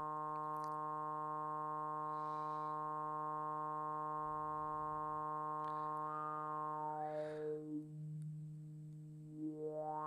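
A steady low synthesizer note with many overtones, played through the PM Foundations 3320 four-pole VCF (CEM3320 chip) with its resonance turned high. About seven seconds in, the cutoff is swept down: the resonant peak glides down through the overtones and the tone goes dull and quieter. Near the end the cutoff sweeps back up in a rising resonant whistle.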